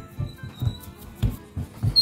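Soft background music with a few dull low thumps as a palm presses crumbly shortcrust dough into a metal pie pan.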